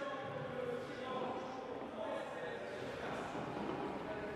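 Faint background talking in a large sports hall, distant voices with no nearby speaker.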